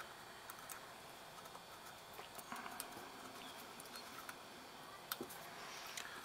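Faint, scattered small clicks and ticks of fingers handling small screws and brush parts on a plastic alternator brush holder, with a sharper click about five seconds in.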